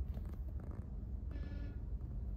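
Low steady rumble of a car heard from inside its cabin. About one and a half seconds in there is a short, high squeaky tone lasting about half a second.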